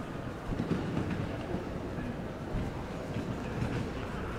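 City street ambience: a steady low rumble with some light, irregular clattering.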